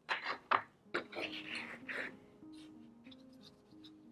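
A paintbrush scratching and dabbing on watercolour paper in the first two seconds: three short strokes about half a second apart, then a longer scrubbing one. Soft background music of slow held notes plays underneath.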